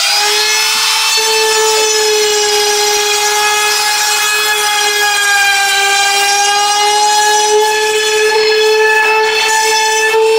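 Compact electric trim router running at full speed, a steady high whine with many overtones as it cuts a channel into the shield face. The motor is just finishing its spin-up at the start, its pitch rising before it levels off.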